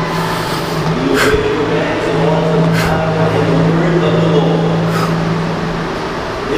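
A steady low hum, with quiet talking over it and a few soft hissing consonants.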